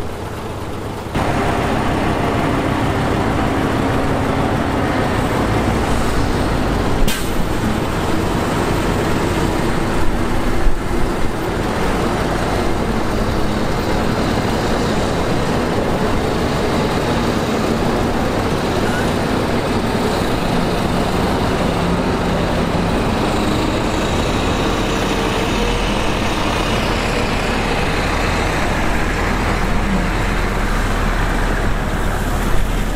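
Heavy diesel construction machinery, a crawler bulldozer and a dump truck, running under load in a steady loud rumble that steps up about a second in. A sharp knock comes about seven seconds in and a few louder knocks around ten to eleven seconds in.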